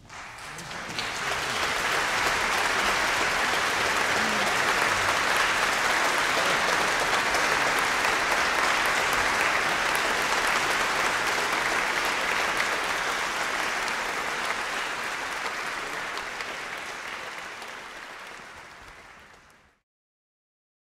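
Concert-hall audience applauding. The clapping swells over the first couple of seconds, holds steady, then dies away and cuts off just before the end.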